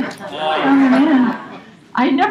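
A person's voice in one long, drawn-out call held for about a second, its pitch rising and falling slightly before it fades.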